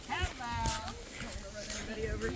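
A child's high-pitched voice calling out briefly without clear words, rising then holding its pitch, with footsteps on concrete pavement.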